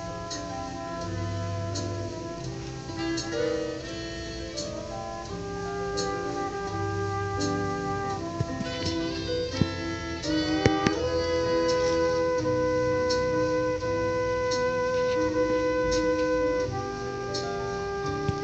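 Solo trombone playing a slow melody over a backing band, with one long held note through the middle of the passage and light percussion strokes keeping time.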